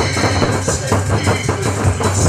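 Korean barrel drums (buk) struck with sticks in a quick, steady rhythm, played along with backing music.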